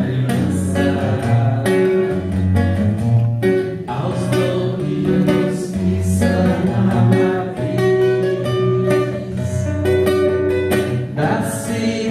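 A man singing to his own strummed acoustic guitar in a live performance.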